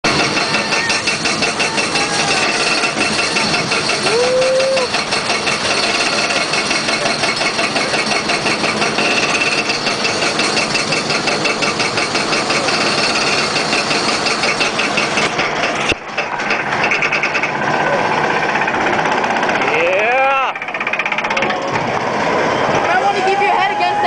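Steel roller coaster's lift chain and anti-rollback clattering rapidly and evenly as the train climbs the lift hill. The clatter stops abruptly about two-thirds through as the train crests, giving way to rushing track noise, and a rider whoops near the end.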